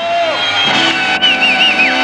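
A television studio audience cheering and applauding loudly, with a warbling whistle a little past the middle, over steady held notes.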